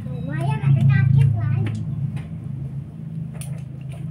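A steady low hum runs throughout, loudest about a second in, with indistinct voices over it early on and a few light clicks in the second half.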